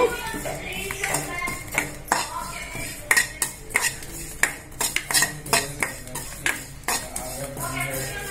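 Steel ladle stirring sesame seeds as they dry-roast in a metal kadai: the ladle scrapes across the pan, with irregular clicks and knocks throughout.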